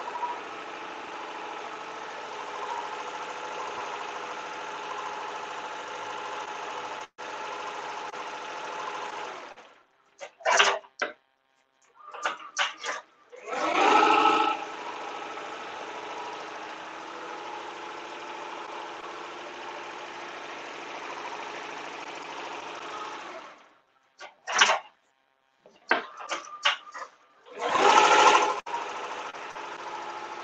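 Tajima multi-needle embroidery machine stitching at a steady pace. It stops twice for a few seconds, with short clicks in each pause, and each time a loud brief burst comes as it starts stitching again.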